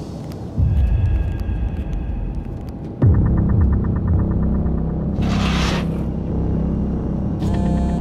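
Trailer sound design: a low, droning rumble that steps up with a deep bass hit about half a second in and a heavier one at about three seconds. A fast ticking pulse runs for a couple of seconds after the second hit, and a brief whoosh sweeps through a little past halfway.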